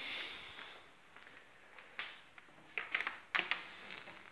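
Faint handling noise: a soft rustle at first, then a few light clicks and knocks around two and three seconds in.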